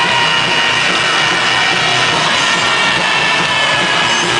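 Live d-beat punk band playing, with distorted electric guitar held in long ringing high notes that slide slowly down in pitch.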